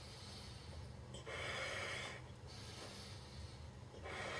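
Breathing while blowing up a large latex balloon by mouth. One loud, hissy breath lasting about a second starts about a second in, and another begins near the end.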